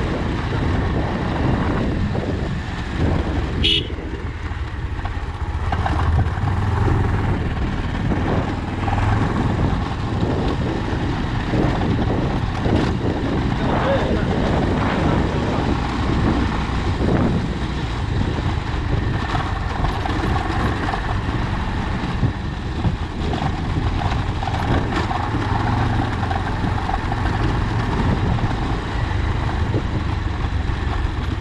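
Motorcycle engine running steadily at low speed while riding over a rough gravel dirt road, with a short high-pitched sound about four seconds in.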